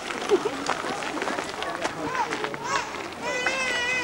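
Several people's voices chattering at once, with footsteps crunching on a dirt path as a group walks. Near the end a high-pitched, wavering call, like a child shouting or singing out, rises above the talk.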